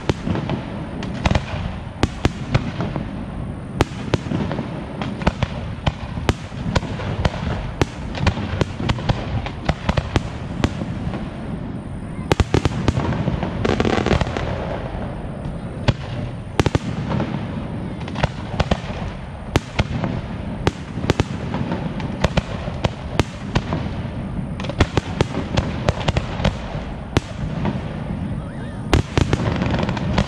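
Fireworks display: aerial shells bursting in quick succession, sharp bangs one or two a second over a steady rumble, with a denser run of bangs near the end.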